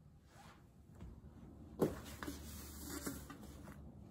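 Faint handling sounds: a sharp knock about two seconds in, then about two seconds of rustling with small clicks.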